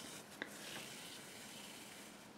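Faint rustle of wool yarn and a steel tapestry needle being drawn through knitted fabric while a seam is sewn by hand. A small tick comes about half a second in, then a soft swish lasting about a second.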